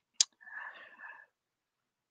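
A single sharp click, then about a second of soft whispering close to a headset microphone.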